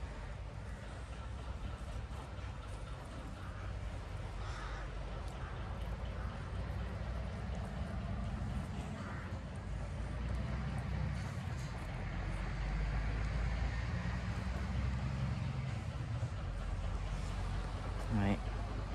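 Outdoor ambience: a steady low rumble of wind on the microphone and distant road traffic, with a few faint crow caws.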